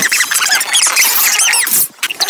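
Cartoon soundtrack played back four times too fast, so its voices and sound effects come out as rapid, high-pitched squeaky chatter; it drops out briefly just before the end.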